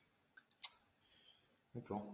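Three short, sharp clicks in quick succession about half a second in, the last one the loudest, then a man's voice begins near the end.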